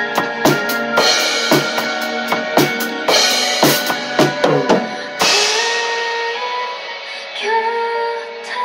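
Acoustic drum kit played along to the recorded song: a steady kick-and-snare beat with cymbals, a quick run of strokes from about three seconds in that ends on a crash cymbal about five seconds in. After the crash the drums mostly drop out and the song's sustained backing tones carry on.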